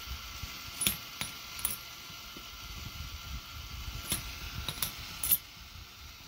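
Half-dollar coins clinking as they are pushed off a K'nex coin pusher's plastic bed and drop into the catch tray: a handful of sharp clicks at uneven intervals, over the low rattle of the pusher mechanism running.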